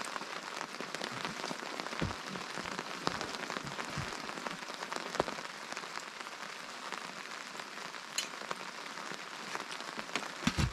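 Steady rain falling on a tarp overhead, with a few short, sharp knocks scattered through.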